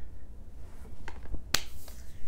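A few faint ticks, then one sharp, snap-like click about one and a half seconds in, over a low steady hum.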